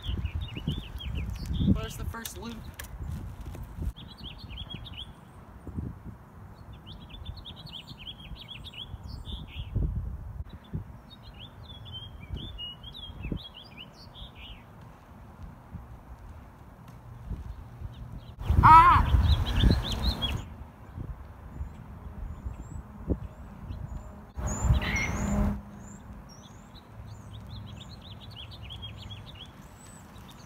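Small birds chirping on and off over the low rumble of wind buffeting the microphone, with two louder bursts of noise about two-thirds of the way through.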